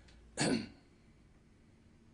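A man clears his throat once, a short, sharp burst about half a second in.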